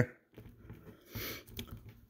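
Faint handling noise of a plastic action figure being gripped and turned: small scattered plastic clicks, with a brief rustle about a second in.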